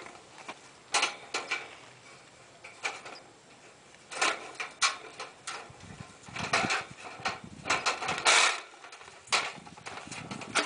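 Wire live-catch cage trap rattling and clinking in irregular bursts as its spring door and latch are worked open by hand, with a longer clatter near the end.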